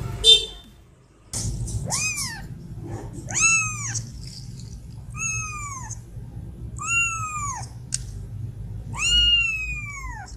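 A kitten mewing: five high calls spaced about one and a half to two seconds apart, each rising and then falling in pitch, the first just over a second in. Right at the start comes a brief, sharp, high squeak, the loudest moment, followed by a short pause.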